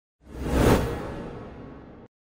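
An intro sound effect for the title graphic: a whoosh that swells quickly to its loudest just under a second in, then fades away with a long ringing tail.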